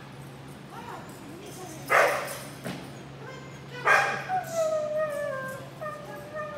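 A dog barks loudly twice, about two seconds apart, then gives a long whining note that slides slowly down in pitch, over a steady low hum from the hall.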